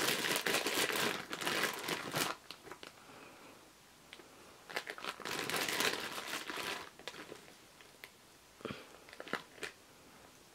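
A plastic bag of baby carrots crinkling as it is handled, in two bouts, the first over the opening two seconds and the second about five seconds in. A few soft taps follow near the end.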